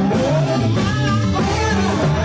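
Live gospel music: men singing lead and backing vocals into microphones over a band of guitar, drum kit and a steady bass line.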